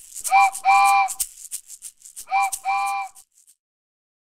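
Cartoon steam-train sound effect: a chord-like train whistle tooting short then long, twice, over a rapid rattling chuff like a shaker. The sound stops about three and a half seconds in.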